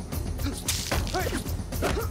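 Staged film fight sound effects: quick whooshing swishes of strikes and blows landing, with a few short, sharp effort shouts from the fighters. The brightest swish comes about a second in.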